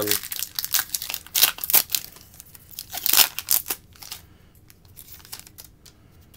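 Foil wrapper of a trading-card pack being torn open and crinkled by hand: a quick run of sharp crackles and tearing over the first four seconds, then softer rustling.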